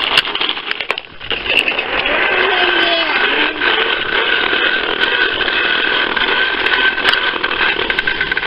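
Fisher-Price toy lawnmower being pushed, making a steady buzzing, engine-like noise that starts about a second in and stops just before the end.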